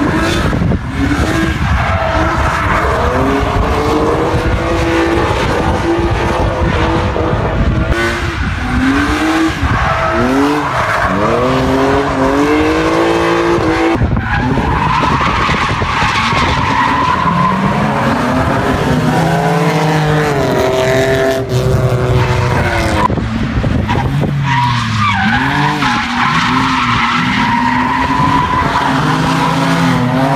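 Drift cars sliding through a corner at full throttle, their engines revving hard up and down over and over, with tyres squealing and skidding. At times two cars run in tandem.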